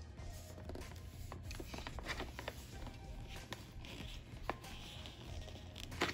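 Faint rustling and small clicks of a printed vinyl decal sheet being handled and smoothed down onto a plastic pencil box, under quiet background music.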